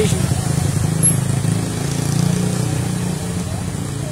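Car engines running at low revs in slow traffic, a steady low hum.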